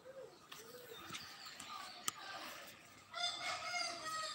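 A rooster crowing, ending in a long held note from about three seconds in that is the loudest sound.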